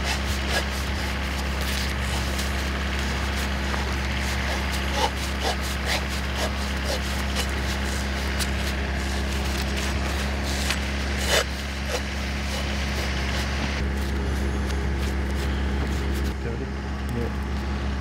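Steady low mechanical hum of a running engine, unchanging throughout, with a few sharp clicks and knocks of hands and tools handling the conductor, the clearest about five and eleven seconds in.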